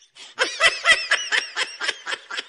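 A person laughing in a quick run of short 'ha-ha' bursts, about five a second, starting about half a second in and tailing off.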